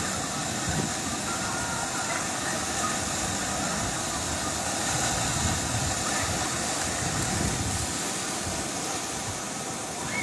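Tsunami surge water rushing and churning as it floods over the shore and around trees, a steady loud rush with a low rumble.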